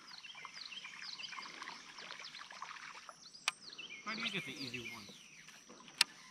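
Small birds chirping, many short high calls one after another, with a single sharp click about three and a half seconds in.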